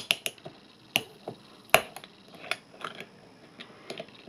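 Screw cap being twisted off a small glass energy-drink bottle, giving a string of sharp clicks and cracks as the tamper-evident seal ring breaks away, the loudest a little under two seconds in.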